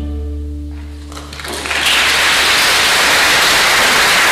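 A string orchestra's last held chord dies away. About a second and a half in, audience applause breaks out and carries on loudly and steadily.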